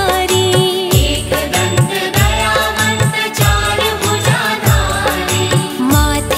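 Hindi devotional bhajan music: a voice singing a gliding, ornamented melody over a regular beat of deep drum thumps.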